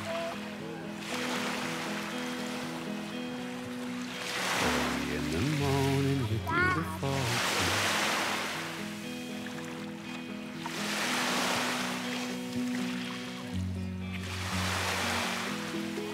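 Background music with steady held chords over small waves washing onto a sandy shore, their rush swelling and fading about every three to four seconds.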